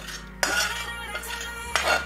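Steel spatula scraping against the inside of an iron kadai in a few rasping strokes, starting about half a second in, with a louder scrape near the end. The browned milk residue left from making ghee is being scraped out.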